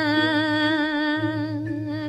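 A solo voice holding one long sung note with a slow wavering vibrato at the end of a line of Balinese geguritan chanted in pupuh Sinom; the note fades out near the end.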